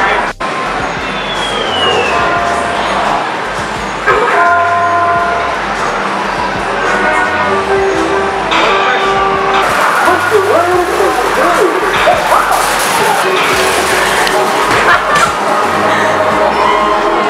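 Busy arcade sound: music with a repeating bass pattern and held electronic tones, mixed with voices. From about ten seconds in it grows busier, with scattered knocks.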